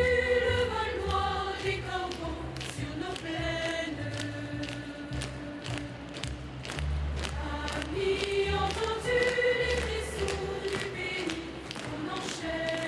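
A choir singing a slow song in long held notes, with occasional soft knocks.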